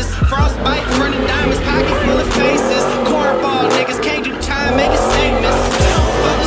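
Tyres squealing as a car spins donuts, over rap music with a heavy bass line.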